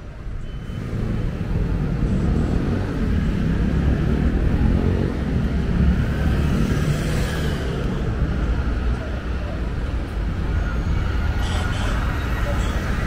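City road traffic passing close: a deep engine rumble from heavy vehicles builds about a second in and holds steady, with a passing vehicle's tyre and engine noise swelling and fading midway.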